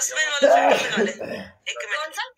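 A person's voice making a loud throat-clearing or coughing vocal sound lasting about a second and a half, followed by a brief burst of speech near the end.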